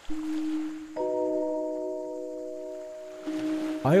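Background music: a single held note, joined about a second in by a sustained chord that slowly fades.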